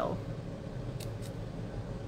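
Small pointed craft scissors snipping a cardstock tag, two short crisp snips about a second in, over a low steady hum.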